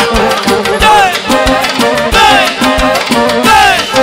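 Live manele band playing an instrumental passage: a lead melody with sliding, falling notes over a steady drum beat.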